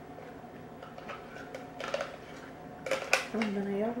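A metal spoon scraping and tapping inside a plastic blender cup to get thick batter out: a few light clicks, then a cluster of louder knocks about three seconds in. A voice comes in near the end.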